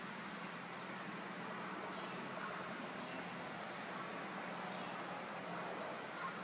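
Steady chorus of insects, an even background drone with no breaks.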